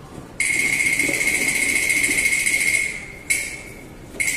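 Cantonese opera percussion: a metal cymbal crash that rings on for about two and a half seconds and then dies away, followed by a second, shorter crash near the end.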